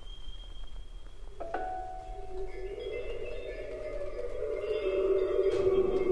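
Sparse contemporary chamber music for shakuhachi, biwa, flute, harp and electronic tape. A thin high held tone gives way, about one and a half seconds in, to a sharp note that rings on, and then a lower sustained tone swells louder toward the end.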